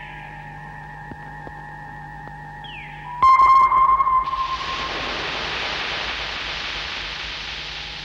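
Electronic science-fiction sound effects for a spaceship interior: a steady electronic drone and hum with a short falling chirp repeating every couple of seconds. About three seconds in, a loud electronic tone sounds, and then a long hiss takes over and slowly fades.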